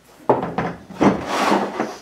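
Rubbing and scraping as parts are handled on a work table: a short stretch near the start and a longer one from about a second in.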